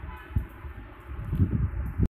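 Low, uneven rumbling and bumps of handling noise on a handheld microphone, with a short knock about a third of a second in and louder rumbling in the second half.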